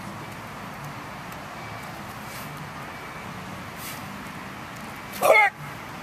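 A short, loud human yell about five seconds in, over steady open-air background noise.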